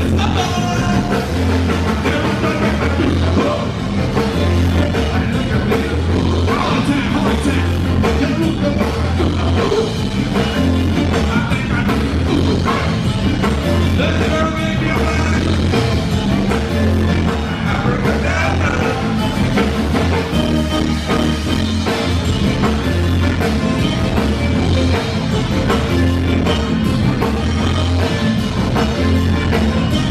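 Live zydeco band playing an up-tempo dance number through a PA, with drum kit, guitar and a heavy, pulsing bass line.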